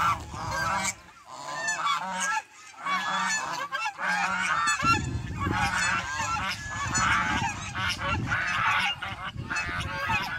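A flock of domestic geese honking, many short calls overlapping without a break. A low rumble joins underneath from about halfway through.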